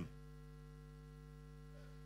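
Faint steady electrical mains hum, a low buzz that holds one unchanging pitch.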